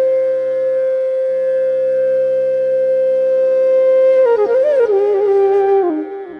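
Bansuri (bamboo transverse flute) playing Raag Bhairavi: one long note held steady for about four seconds, then ornamented slides down that settle on a lower note near the end, over a steady low drone.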